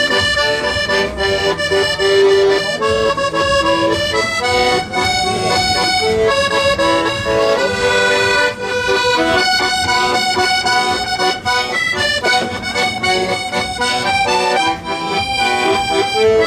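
Hohner accordion played solo: a melody of held, reedy notes changing pitch every half second or so over sustained lower chords.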